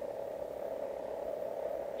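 Steady hum and hiss of an old cassette-tape recording, with no voice on it.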